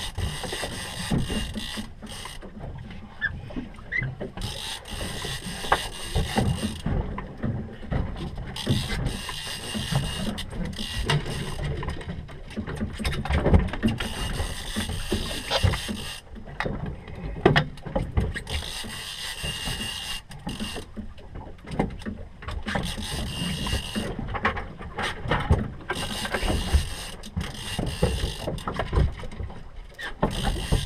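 Deck sounds of a small fishing boat at sea: a constant rush of wind and water, with irregular knocks and clatter of gear on the deck.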